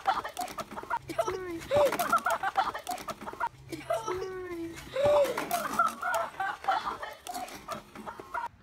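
Excited young voices shouting and exclaiming without clear words. The same short stretch of sound repeats about three times, roughly three seconds apart.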